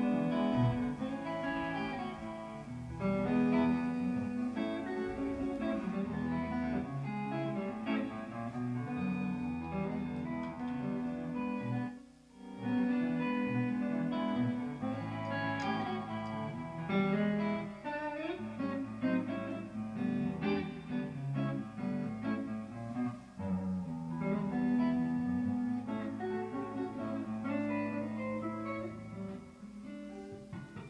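Electric guitar playing a flowing melody of picked single notes over steady held low notes, with a brief pause about twelve seconds in.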